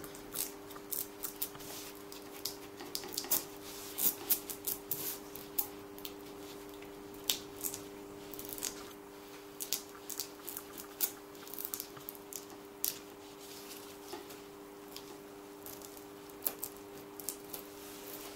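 Thin plastic sheet crackling and clicking irregularly as it is flexed and peeled back from a dried piped icing outline, over a steady low hum.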